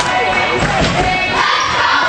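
Basketball bouncing on a hardwood gym floor amid shouting and voices from the crowd and bench.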